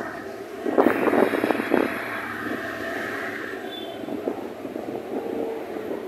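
An EMD MP15AC diesel switcher locomotive coasting slowly toward the listener. Its wheels knock over rail joints and switch points in a quick burst starting about a second in, then it settles into a steadier rolling rumble.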